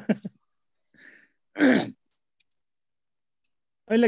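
A man's stifled laughter: a short burst at the start and a louder, breathy burst with falling pitch about a second and a half in.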